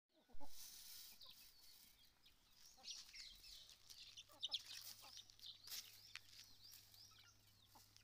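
Faint clucking and high cheeping of free-ranging chickens, in short scattered calls, with a brief louder sound just after the start.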